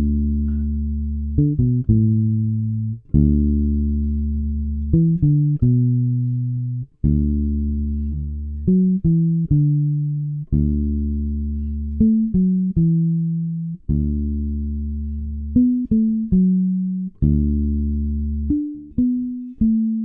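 Electric bass guitar playing a major-pentatonic fill: a held low root note, then a quick three-note pattern, the phrase repeating about every three and a half seconds as it moves up the neck.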